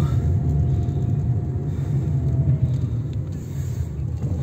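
Steady low rumble of a car driving slowly, heard from inside the cabin, with a faint thin whine over it for the first couple of seconds that fades away.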